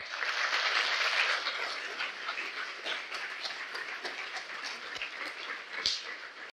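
Audience applauding, starting suddenly and loudest over the first two seconds, then easing slightly.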